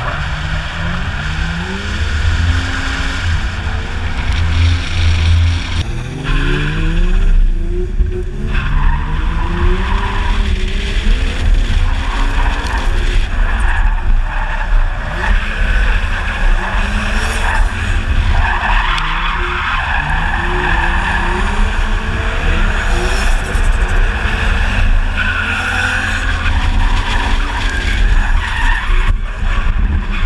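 A car's engine revving up and down again and again while its tyres skid and squeal through drifts, heard from inside the cabin.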